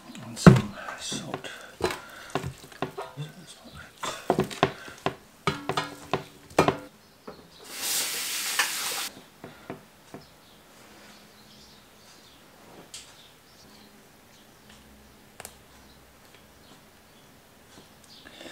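Food-preparation handling of a raw chicken in a stainless steel roasting tray: a run of clicks and knocks for the first several seconds as it is oiled and rubbed, a short hiss about eight seconds in, then only faint handling as it is trussed with skewers.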